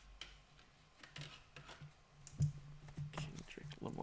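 Computer keyboard typing: irregular light clicks, one louder knock a little past midway, over a low steady hum.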